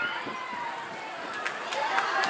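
A lull between amplified announcements: faint voices, with a few light knocks in the second half.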